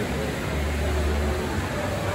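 Steady ambient noise of an indoor swimming-pool hall: a ventilation hum with a low rumble that swells for about a second in the middle.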